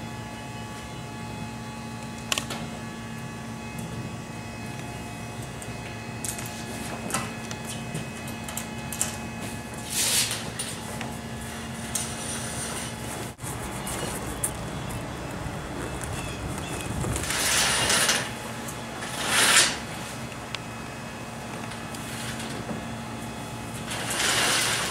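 Clear vinyl patio curtain being slid along its roller track and gathered up, with a click a couple of seconds in and short rustling swishes about ten, seventeen and nineteen seconds in, over a steady low hum.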